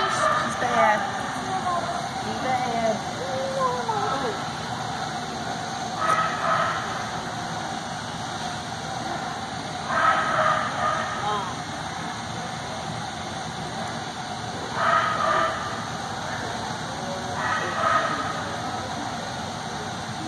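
Voices calling and a dog barking in a large echoing hall, over a steady background din, with brief louder bursts every few seconds.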